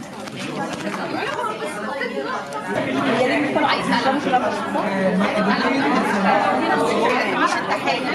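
Many voices talking over one another in a large room: workshop participants chattering in small-group discussions around tables. It grows louder about three seconds in.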